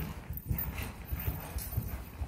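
A horse's hooves falling on the soft sand footing of an indoor arena as it is ridden. They make dull, low thuds in a steady rhythm.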